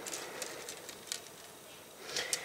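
A few light clicks of small plastic LEGO pieces being slid and set down on a tabletop by hand, over a faint steady background noise.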